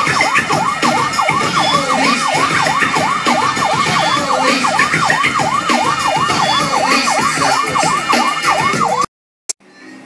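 Police siren sound effect of a Snapchat police-officer lens, a fast yelp sweeping up and down about four times a second, loud and steady; it cuts off suddenly near the end.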